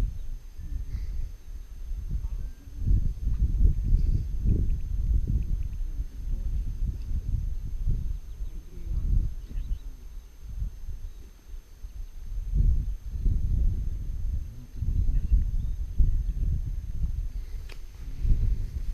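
Wind buffeting the camera microphone: a low rumble that swells and drops in irregular gusts.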